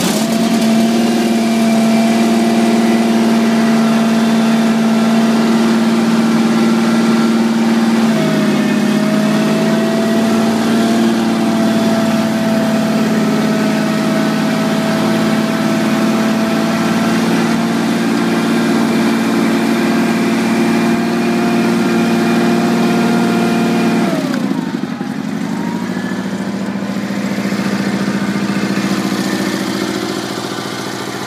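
Sears 18/6 Twin garden tractor's twin-cylinder engine running steadily just after a cold start in freezing weather. The engine note shifts slightly about 8 seconds in, then drops in speed about 24 seconds in and settles at a lower, slightly quieter pitch.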